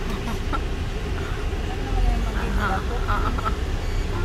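Car driving slowly, heard from inside the cabin: a steady low rumble of engine and road noise, with faint voices over it.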